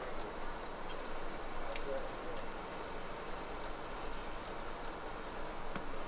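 Steady hum of road traffic.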